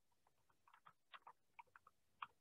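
Near silence with faint, scattered light clicks, more of them in the second half.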